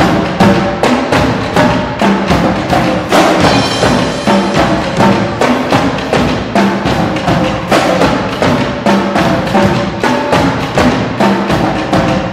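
Marching drumline playing: snare drums, tenor drums and marching bass drums struck together in a fast, steady rhythm, loud throughout.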